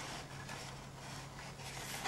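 Faint handling noise of paper and thread as a needle is passed through a pierced hole in a folded paper section, over a steady low hum.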